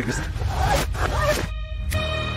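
Film trailer soundtrack played in reverse: backwards dialogue fragments and sharp noise sweeps over a low music bed. About a second and a half in, these give way to a held musical chord.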